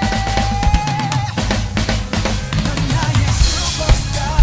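A large drum kit played along to a song's recording: bass drum, snare and cymbal hits running steadily under the music, with a long held, slightly wavering melody note in the first second or so.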